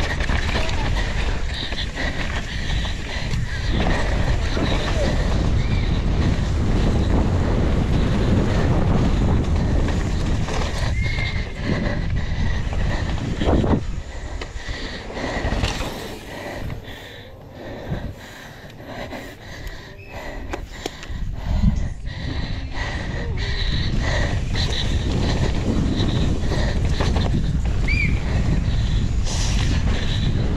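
Downhill mountain bike ridden fast down a dirt track, heard from the bike-mounted camera: wind buffeting the microphone, tyres on loose dirt and the bike rattling over bumps, with a few short high squeals from the brakes. It goes quieter for a few seconds past the middle, with separate knocks, then picks up again.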